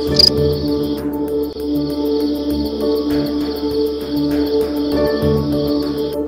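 Night insects trilling in one continuous high buzz over calm ambient background music with sustained tones.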